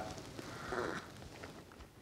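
A person quietly sipping espresso from a small glass, a faint soft sip with breath through the nose, over quiet room tone.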